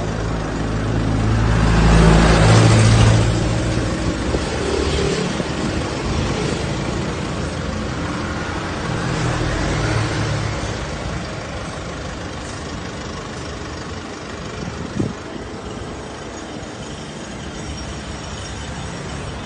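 A motor vehicle's engine runs close by, swelling loudest about two to three seconds in and settling into a steadier rumble of traffic. A single short, sharp knock sounds about fifteen seconds in.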